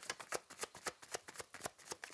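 A deck of oracle cards being shuffled by hand, making a rapid, even run of crisp card snaps about seven a second.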